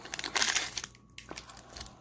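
Wrapper of an Upper Deck hockey card pack crinkling as it is torn open and peeled back from the cards: a dense spell of crinkling in the first second, then fainter rustles.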